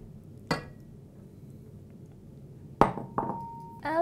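A metal measuring spoon clinking against a saucepan: a light clink about half a second in, a louder knock near three seconds, then another clink that rings on for most of a second.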